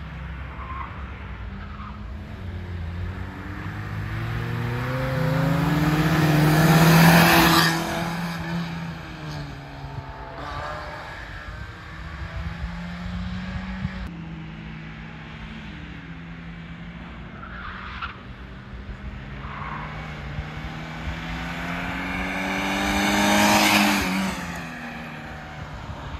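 Autoslalom cars accelerating hard through a cone slalom on wet asphalt, engines revving up and dropping back between gear changes. Two loud close passes, about 7 s and 23 s in, each with a rush of tyre hiss.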